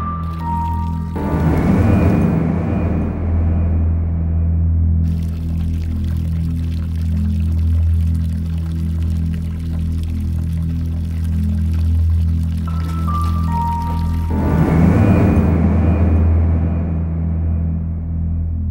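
Low, droning suspense music, with short stings near the start and again near the end. Through the middle, a thin stream of water runs from a wall tap into a basin, then stops.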